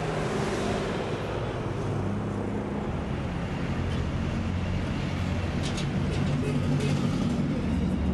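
Street traffic: cars passing and engines running steadily in the street, with a few light clicks around six seconds in.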